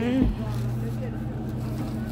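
Steady low hum of an idling car engine, with a brief voice and a low thump near the start.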